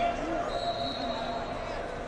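Large sports-hall tournament ambience: voices from around the hall, a thud right at the start, and a steady high-pitched tone from about half a second in, lasting under a second.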